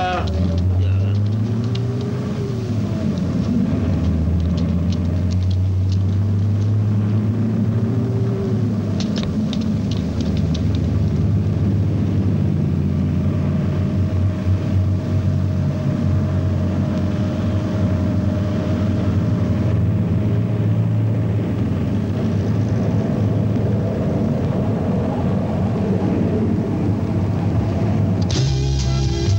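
Bus engine running with a steady low drone throughout, as the bus pulls away and travels.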